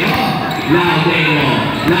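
A basketball dribbled on a hard court floor, a few sharp bounces, under a man's voice singing a slow song with long held notes.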